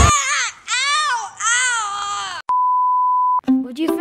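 A boy crying out three times, each yell rising and then falling in pitch. A click follows, then a steady beep for about a second, and plucked-string music starts near the end.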